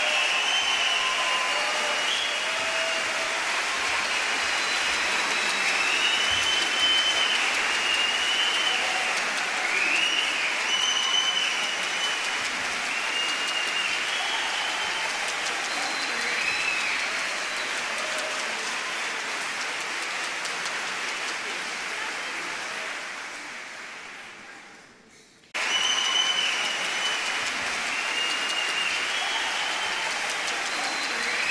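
Large concert-hall audience applauding, with whistles rising above the clapping. The applause fades out about four-fifths of the way in and then comes back suddenly at full strength.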